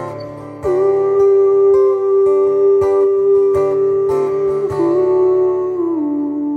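Live acoustic song: steel-string acoustic guitar strummed about twice a second, with a long held wordless vocal note over it that steps down in pitch near the end.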